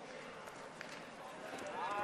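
Quiet background of a large hall with faint distant voices; one voice rises faintly near the end.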